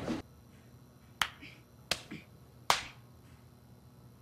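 Three sharp snapping clicks, evenly spaced about three-quarters of a second apart, each dying away quickly over quiet room tone.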